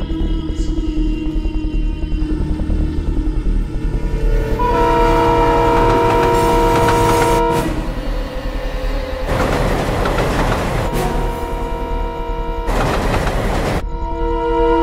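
An approaching train over a steady low rumble: its air horn sounds one long blast of several notes at once, starting about five seconds in and held for about three seconds, followed by two loud bursts of rushing noise near the end.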